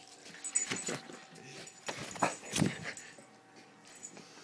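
Rhodesian ridgeback making short, irregular vocal sounds while mouthing at an arm in rough play, the loudest about two and a half seconds in, mixed with knocks and rubbing close to the microphone.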